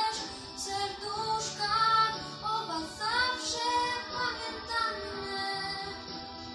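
Young girls singing a song on stage with musical accompaniment, the sung melody gliding and breaking from phrase to phrase.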